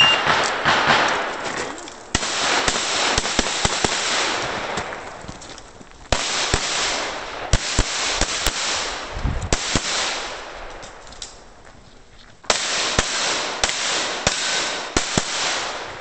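A shot timer gives a short high beep, then a Tanfoglio Stock II pistol fires strings of rapid shots in several groups with short pauses between them, each group trailing off in a long echo.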